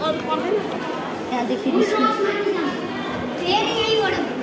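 Voices of several people talking, with overlapping chatter in the background.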